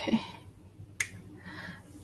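The tail of a spoken "okay", then a single sharp click about a second in.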